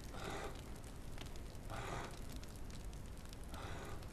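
Quiet room tone with three soft breaths about a second and a half apart, a man breathing in a pause between two lines.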